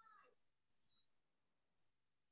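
Near silence: room tone, with a very faint short sound that falls in pitch right at the start.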